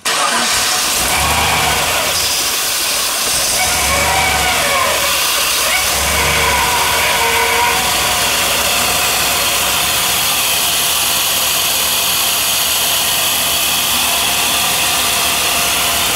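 Junkyard truck's 6.0-litre LS V8 firing up on a Holley Terminator X EFI and running loud and steady, with three brief low surges in the first seven seconds.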